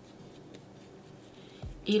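Faint, soft rubbing and patting of hands shaping a ball of masa dough, with a woman's voice starting near the end.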